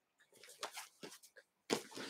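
Faint scattered clicks and light rustling from a photo binder with plastic sleeves being handled and lowered, rising to a louder rustle near the end.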